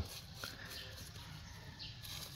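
Quiet outdoor background hush with a faint steady high tone and one soft click about half a second in.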